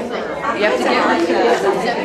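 Several people talking over one another, with laughter.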